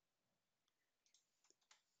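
Near silence, with a few very faint clicks of a computer mouse.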